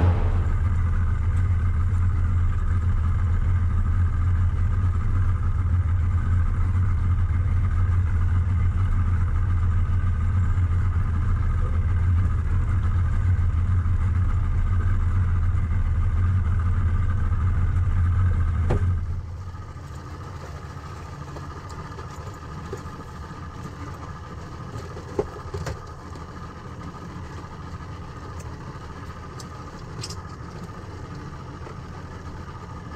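Boat's outboard motor idling steadily with a low hum. About two-thirds of the way in, the hum drops away sharply to a much quieter low rumble, with a couple of small knocks later on.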